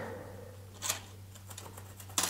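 Faint, mostly quiet stretch with a low steady hum, broken by one short scratch about a second in and a fainter tick later, as marks are made on a plastered wall against a metal shelf angle.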